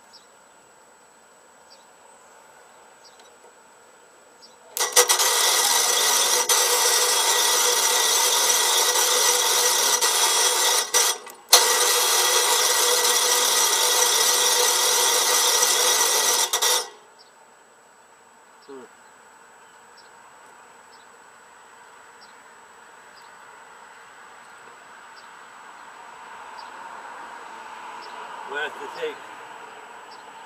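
Electric starter cranking the Tecumseh 8 hp engine of a Massey Ferguson 8 garden tractor: two long bursts of a steady whine, about six and five seconds long, with a brief pause between them. The engine doesn't catch.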